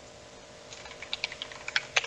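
Typing on a computer keyboard: a quick run of about a dozen keystrokes starting just under a second in, as a short word is typed into a text field.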